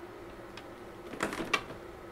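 An Epson EcoTank ET-2720 inkjet printer being shaken by hand, giving a short cluster of plastic rattles and knocks about a second in. It is shaken to loosen ink that is not flowing to clogged nozzles.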